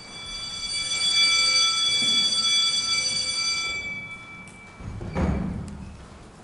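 A steady, high electronic tone with a stack of overtones swells in, holds for about three seconds and fades out. A single dull thud follows about five seconds in.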